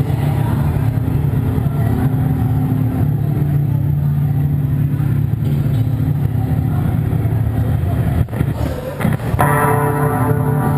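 A heavy-metal band playing live through amplifiers: a loud, sustained, low distorted guitar-and-bass drone. It drops out briefly about eight seconds in, then the band comes back in fuller just before the end.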